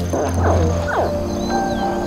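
Crocodile hatchlings chirping: three or four short calls in the first second, each falling steeply in pitch. They are heard over background music of sustained held notes.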